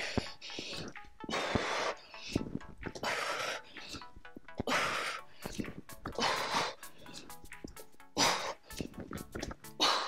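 A woman breathing hard during a bodyweight exercise: about five noisy breaths, one every one and a half to two seconds. Faint background music plays under them.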